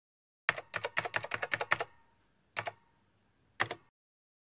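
Keyboard typing sound effect: a quick run of key clicks lasting about a second and a half, then two single keystrokes about a second apart near the end.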